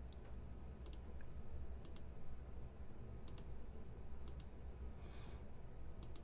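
Computer mouse clicking four times, sharp short clicks about a second apart, over a low steady background hum.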